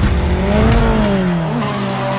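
Race car engine sound effect: one engine note that rises a little and then falls in pitch, like a car passing by.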